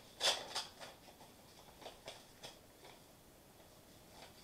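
A paper envelope being opened by hand: short tearing and rustling sounds of paper, loudest just after the start, then a few fainter rustles about two seconds in.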